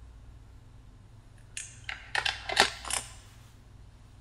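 A quick cluster of short clicks and rustles, starting about halfway through and loudest about two and a half seconds in, over a low steady hum.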